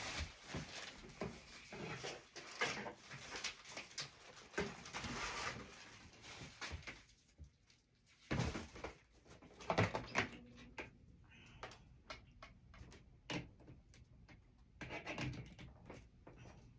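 Rustling and knocking as craft supplies are rummaged through and handled, dense at first, then a quieter stretch broken by a few sharp clicks and thumps.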